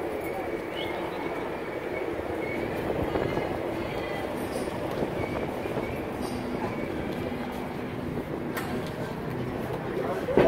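Steady din of a busy city sidewalk: a continuous rumble of street traffic with faint voices of people nearby.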